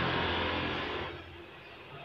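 A road vehicle passes by, its engine and tyre noise steady at first and then dying away about a second in.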